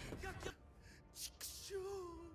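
Faint voices from the anime episode playing in the background: a character's line at the start, a short sharp breath just after a second in, then a man's voice drawing out a line that slides down in pitch near the end.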